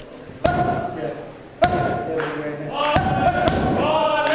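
Boxing gloves striking a trainer's focus mitts: about four sharp, loud smacks, irregularly spaced and roughly a second apart.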